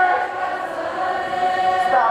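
A crowd of protesters singing together in unison, holding long notes.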